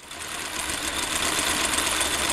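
Film projector running: a rapid, steady mechanical clatter that swells in over the first half second.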